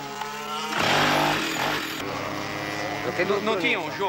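A go-kart's two-stroke engine buzzing, loudest about a second in. People talk over it near the end.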